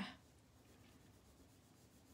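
Faint rubbing of a coloured pencil drawn across paper, held on its side to blend and glaze colour, just above near silence.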